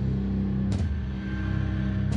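Live band playing a slow, heavy drone: a sustained low guitar chord ringing steadily, with a single sharp percussion hit about a third of the way in.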